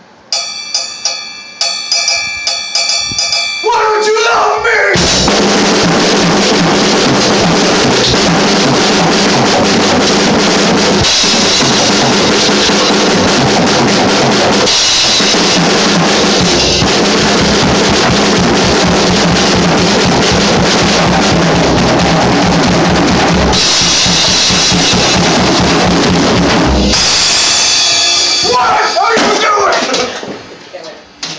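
Drum kit played solo. It opens with a few seconds of separate ringing cymbal and drum strokes, then breaks into a loud, steady full-kit groove with bass drum and cymbals, and near the end it drops back to ringing strokes.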